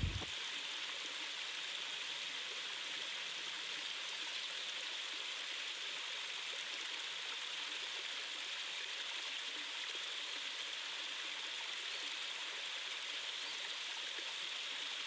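Waterfall cascading over rocks into a pool: a steady, even rush of falling water.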